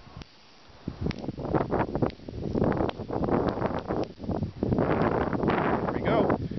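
Electric matches igniting one after another as the submerged sequencer steps through its cues: sharp pops and crackle starting about a second in and growing denser, mixed with wind noise on the microphone.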